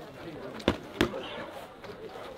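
Two sharp smacks of boxing-glove punches landing, about a third of a second apart, near the middle.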